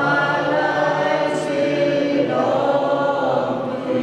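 A slow hymn sung in long held notes, with a new phrase coming in about two seconds in.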